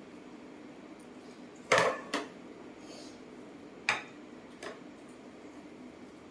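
A few short knocks and clinks of dishware on a table, four in all, the loudest about two seconds in.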